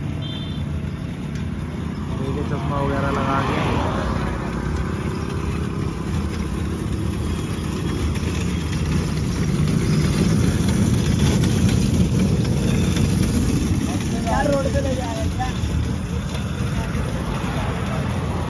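Highway traffic: a steady rush of passing vehicles that swells toward the middle and eases near the end.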